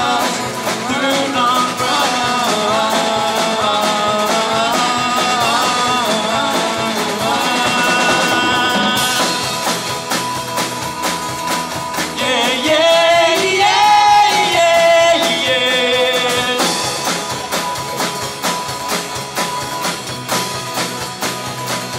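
Live acoustic folk-rock band playing: strummed acoustic guitars, electric bass and drums keeping a steady beat, with voices singing over them.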